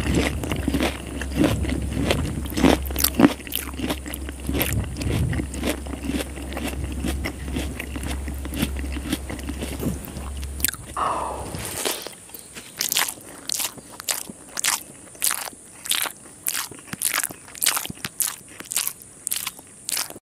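Close-miked chewing and crunching of a mouthful of curry-soaked rice eaten by hand, with wet mouth clicks, over a steady low hum. About twelve seconds in the hum stops, and the sound thins to a run of short sharp clicks at nearly two a second.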